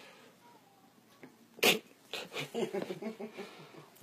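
A single sharp sneeze about a second and a half in, followed by soft, low voice sounds.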